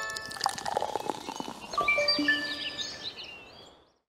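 Short channel intro jingle: a run of bright held notes with quick clicks, fading out near the end.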